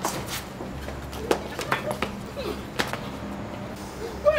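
Footsteps on wooden floorboards: a handful of sharp, irregularly spaced knocks over a steady low hum.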